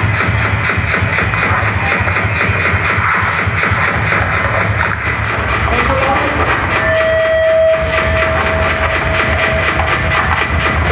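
Harsh noise music played live on electronics: a loud, dense wall of noise with a fast, even pulsing running through it, and a steady high tone that comes in about seven seconds in.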